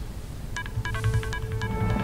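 Quiet electronic background music under a news bulletin, with a quick string of short, high, beep-like notes starting about half a second in.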